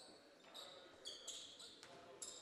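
Near silence in a gymnasium, with a few faint, brief, high-pitched squeaks of basketball sneakers on the hardwood court.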